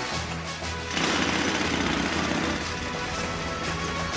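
Background music, with a loud burst of power-drilling machinery noise about a second in that lasts about a second and a half.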